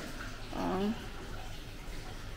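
One short voiced hum from a person about half a second in, its pitch gliding, over a steady background hiss.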